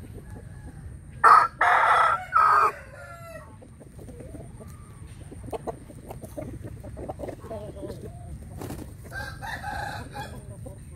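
A fighting-cock rooster crows once, loudly, about a second in, the crow broken into three parts. A shorter, quieter rooster call comes near the end.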